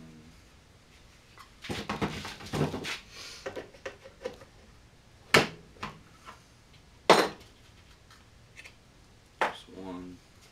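Alignment pins being worked out of a fiberglass fuselage mold by hand: a rattling clatter about two seconds in, then three sharp, hard knocks a second or two apart.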